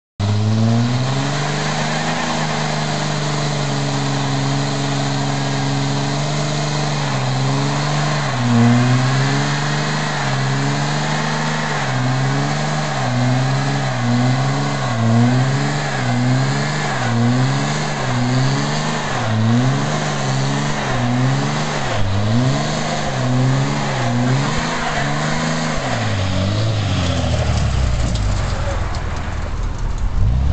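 Stock 2004 Dodge Ram 3500's 5.9-litre Cummins turbo-diesel inline-six held at high revs during a burnout, the rear tyres spinning. The revs hold steady for about the first ten seconds, then rise and fall about once a second, and drop away near the end.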